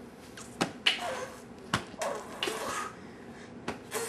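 A few sharp clicks or taps, spaced irregularly, with brief faint vocal sounds between them.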